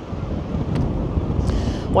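Sea wind buffeting the microphone: an uneven low rumble that rises and falls, over a fainter steady hiss.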